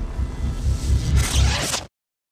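Electronic closing sting for an end logo: deep pulsing bass under a swelling whoosh of noise that grows brighter in the second half, then cuts off suddenly just before the end.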